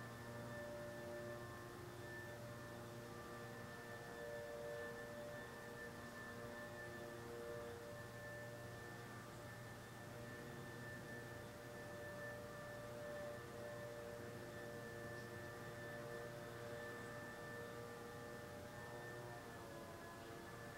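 Faint steady drone of several overlapping sustained tones, some swelling and fading, with a slight shift in pitch near the end.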